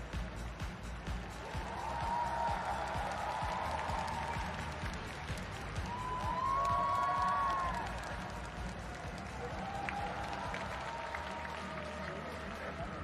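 Music played over an arena's sound system, with a large audience clapping along in a steady rhythm and applauding as the skaters finish and wave.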